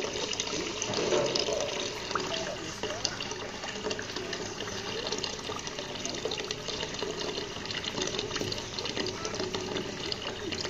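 Water trickling and splashing steadily into a small garden fish pond, a continuous bubbling wash with many small crackles.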